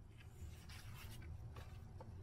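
Glossy photo prints being slid and shuffled by hand: a few short, soft paper rustles over a low steady hum.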